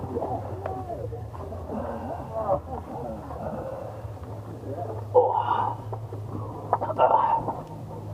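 Indistinct voices and grunts of people crawling through a cramped dark tunnel, with a few short knocks and a steady low hum beneath.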